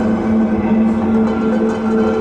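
Eurorack modular synthesizer playing electronic music: a steady low drone with higher held tones that grow stronger partway through, over a dense rumbling low texture.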